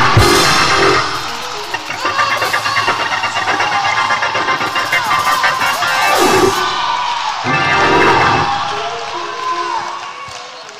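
Church music with a congregation cheering and shouting in response to the preaching, with a fast rhythmic beat through the middle, dying down near the end.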